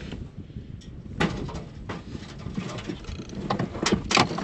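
Scattered knocks and scuffs of someone climbing a wooden ladder in a tight timbered shaft, boots and body bumping against rungs and timbers. One sharp knock comes about a second in, a lighter one soon after, and two more near the end, the last the loudest.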